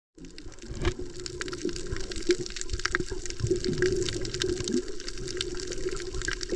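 Water noise heard through a camera held underwater on a coral reef: a muffled, steady wash with many scattered sharp clicks and crackles.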